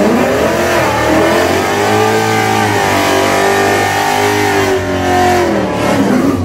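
Ford Mustang's 5.0 Coyote V8 revving up quickly and held at high revs for about five seconds, as in a burnout, then dropping off near the end.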